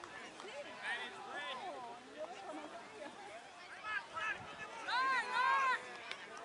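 People shouting and calling out indistinctly, with two long, high yells near the end.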